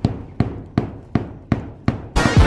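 Hammer striking overhead, six sharp blows a little under three a second, each with a short ring after it.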